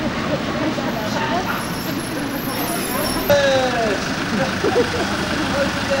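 Street traffic with a car close by and people talking among themselves in the background. About three seconds in, a sudden louder sound with a falling pitch.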